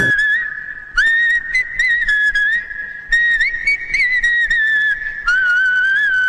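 A melody whistled in three long phrases, starting about one, three and five seconds in, each mostly held notes with small wavering turns in pitch.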